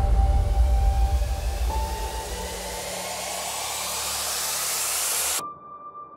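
Edited intro sound effects: a deep boom's rumble fades away while a hissing noise sweep rises and swells, then cuts off suddenly about five and a half seconds in. A faint steady high tone follows.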